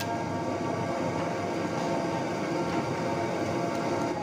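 A pan of beef and potato curry simmering, under a steady mechanical hum with a few constant tones running through it.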